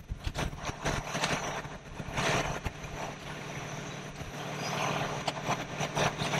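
Fire truck engine idling steadily with a low hum, under irregular knocks and short bursts of noise, the loudest about two seconds in.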